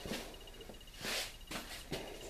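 Quiet room tone with a short, soft hiss about a second in.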